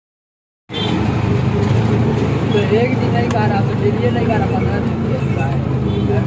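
Auto-rickshaw engine running steadily, heard from inside the cabin while it drives through street traffic; the sound cuts in abruptly under a second in.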